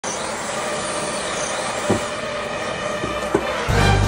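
Handheld propane torch burning steadily with a hiss as its flame is played over a wooden board to char it, with a few faint clicks. Music with a strong bass comes in near the end.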